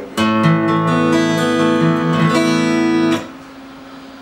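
Freshly strung steel-string acoustic guitar strumming an open A sus2 chord on the five strings from the A string up (the low E left out). The chord rings and is damped suddenly about three seconds in.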